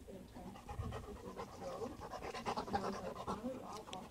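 A dog panting from play, in quick breaths that grow louder about halfway through.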